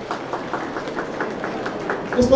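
A quiet, even run of clicks, about five or six a second, over a low steady background noise.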